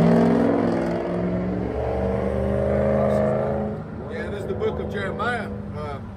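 A motor vehicle's engine running as it drives along the street, a steady droning note that fades away over the first four seconds. Faint voices follow.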